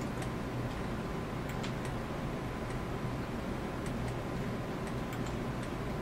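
Faint, irregular ticks of a computer mouse's scroll wheel and buttons as a web page is scrolled, over a steady background hum.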